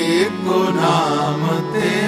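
Sikh shabad kirtan: a voice singing a wavering, ornamented line over steady held harmonium tones.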